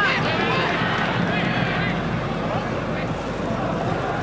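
Steady football-stadium crowd noise with voices over it that rise and fall, busiest in the first half.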